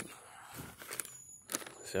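Faint handling noise from a gloved hand on a cardboard cereal box, with a light tap about a second in, over quiet outdoor background.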